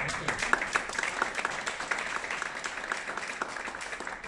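An audience applauding; the clapping starts abruptly and keeps up steadily.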